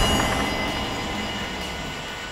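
A low, rumbling drone with sustained tones, fading away gradually after a loud low boom just before.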